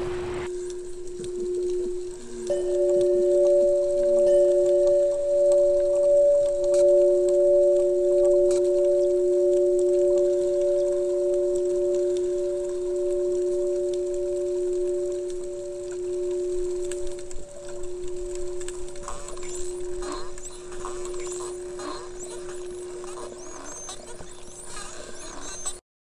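Sustained singing-bowl tones: a low, steady tone with a second, higher tone joining about two and a half seconds in, both held and slowly fading near the end, with faint high chirps in the last few seconds.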